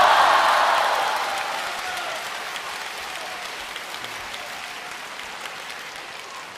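Large theatre audience applauding as performers come on stage, loudest at the start and slowly dying down.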